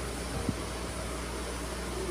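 Steady low hum and background room noise, with one faint click about half a second in.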